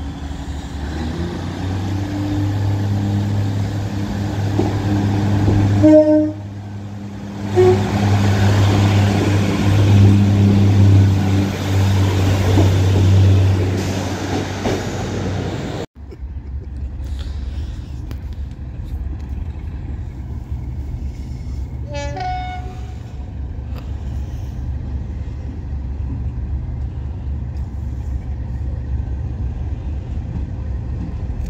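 Diesel locomotive engine running with a deep, steady note, with short horn toots about six and eight seconds in. After a sudden cut about halfway through, a quieter diesel rumble goes on, with one brief horn toot a little later.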